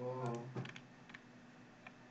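A short voiced sound at the start, then a few soft, scattered clicks of computer input.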